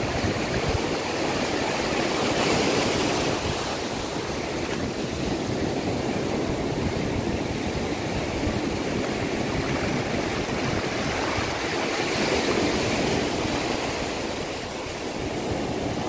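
Ocean surf breaking and washing up the sand: a steady rush that swells about two seconds in and again around twelve seconds.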